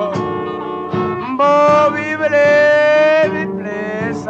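Music: a blues recording with guitar accompaniment and a long held melody note that bends slightly, in a gap between sung lines.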